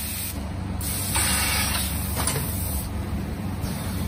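Vertical powder packing machine running with a steady low drone. About a second in comes a hiss of compressed air lasting under a second, typical of its pneumatic cylinders venting, followed by a light click.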